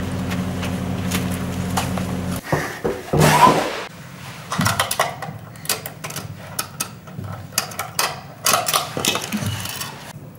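A key working a small padlock on a box's metal hasp: a run of sharp metallic clicks and rattles through the second half. Before it, a steady low hum, then a loud scraping rush about three seconds in.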